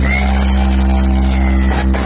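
DJ dance-mix music played loud through a truck-mounted DJ loudspeaker stack, built on a deep, steady bass hum under a held synth note. Drum hits come back in near the end.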